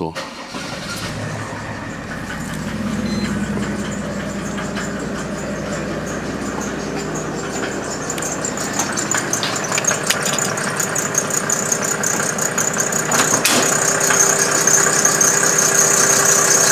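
A Mercedes W210 E300 Turbodiesel's turbocharged inline-six diesel starts after glow-plug preheating, with a brief rise in revs about three seconds in. It then settles into a steady idle with the typical diesel nail clatter, growing louder toward the end.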